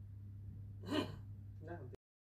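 A narrator's audible intake of breath about a second in, with a short trace of voice near the end, over a steady low hum; the sound then cuts off.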